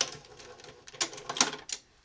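A Brother Nouvelle 1500S sewing machine stopping: a sharp mechanical click, a faint running sound that fades out, then two more sharp clicks about a second in.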